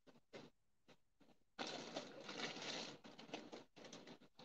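Near silence, with a faint rustling noise starting about a second and a half in and lasting about a second.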